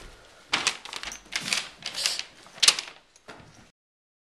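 A paper road map rustling and crinkling under gloved hands in several short bursts, cutting off abruptly near the end.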